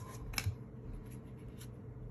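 A stack of cardboard trading cards being handled, the front card slid off and tucked behind the others: a few faint snaps and rubs of card stock, the clearest about half a second in.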